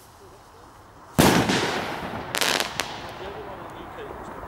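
Cosmic Black Gemini firework rocket bursting overhead: one loud bang about a second in that echoes away, then a quick run of sharp cracks around two and a half seconds, with a few faint pops trailing after.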